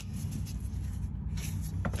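A steady low hum, with faint rustling and a couple of soft short knocks in the second half.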